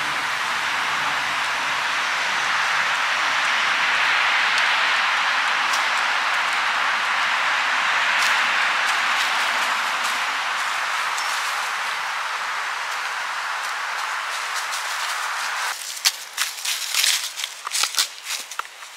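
A steady rushing hiss of wind through trees, swelling and easing. About two seconds before the end it gives way to close, crisp crackles of footsteps on dry fallen leaves.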